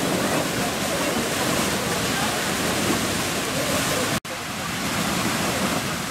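Beehive Geyser in full eruption: the steady water column jetting from its cone with a loud, even rushing of water and spray. The sound cuts out for an instant just after four seconds.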